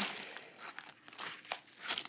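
Clear plastic packaging bag crinkling as it is handled, in a few short bursts with quiet gaps between.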